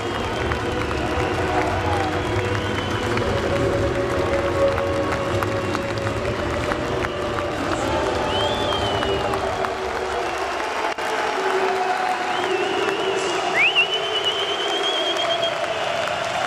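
Large indoor arena crowd applauding and cheering over music played through the PA system; the music's bass drops away about ten seconds in while the crowd noise carries on.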